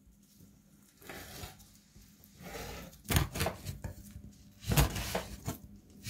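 A large kitchen knife slicing through raw carp fillet on a plastic cutting board: faint slicing strokes at first, then several sharp knocks of the blade on the board from about three seconds in.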